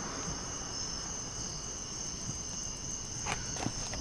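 A steady high-pitched whine or trill with a fainter lower tone, over a low hum and faint hiss, with a couple of faint knocks near the end.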